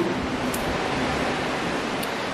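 Steady rushing background noise, even and unbroken, with a faint click about half a second in.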